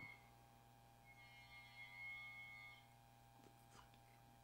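Near silence over a low steady hum, with a faint, held high-pitched sound from outside starting about a second in and fading under two seconds later.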